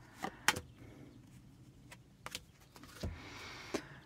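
Laminated oracle cards drawn from the deck and laid on a table: a handful of short, sharp clicks and taps, with a dull tap about three seconds in and a soft slide near the end.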